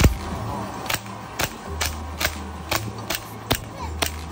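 Toy pistol firing at balloon boards in a shooting game: about eight sharp shots, roughly two a second, the first the loudest.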